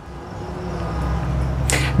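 A low rumble that slowly grows louder, then a quick sharp intake of breath near the end.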